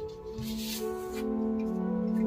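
Soft ambient background music of sustained chords. A brief rustle of paper card is handled about half a second in.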